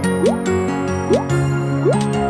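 Playful background music for a children's cartoon, with a short rising pitch glide, like a cartoon bloop, about every three-quarters of a second, three times.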